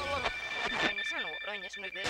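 Warbling electronic sound effect of a toy radio globe tuning as it turns, its pitch wobbling rapidly up and down.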